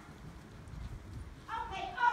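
Quick, irregular thuds of a dog's paws as it runs down an agility A-frame. A high-pitched voice comes in near the end.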